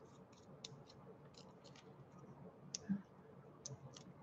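Faint, scattered small clicks and light scratching from fingers handling a paper backing sheet of foam adhesive dimensionals, picking a dot off it, with a soft thump near three seconds in.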